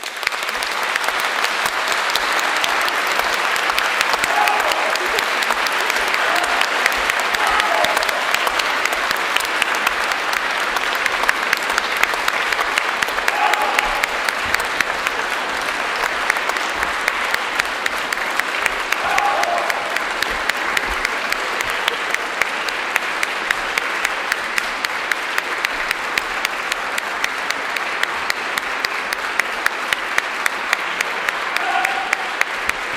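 Concert audience applauding, breaking out at once and running on steadily, with a few brief voices calling out over it.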